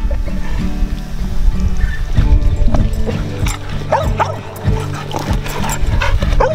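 Background music, with a dog whining and yipping in short calls over the second half.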